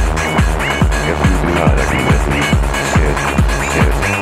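Hard techno DJ mix: a heavy kick drum with a falling pitch hitting about three times a second under dense synth chords and short gliding high synth stabs.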